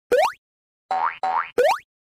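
Cartoon-style boing sound effects: a quick upward pitch sweep, two short pitched notes about a second in, then another quick upward sweep.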